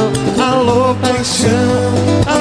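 Live band music: a male singer holds wavering sung notes through a microphone over acoustic guitar and a steady bass line.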